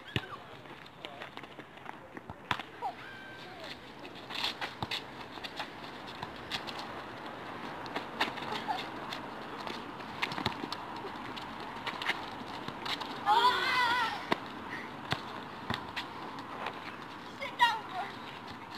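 A football being kicked and dribbled on a hard tarmac court, with scattered sharp knocks of ball touches and shoe scuffs. A short shout about 13 seconds in is the loudest sound.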